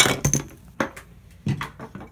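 A sharp knock, then a scatter of smaller knocks and clinks about a second and a second and a half in: small hard objects knocked about or dropped, with the phone being jostled, though nothing breaks.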